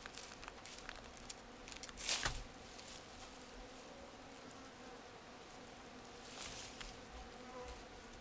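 Flies buzzing steadily around meat, with a couple of brief rustling sounds about two seconds in and again later.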